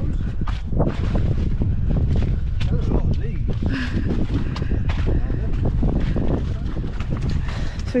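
Wind rumbling on the microphone, with repeated short crackling rustles and a few faint voices.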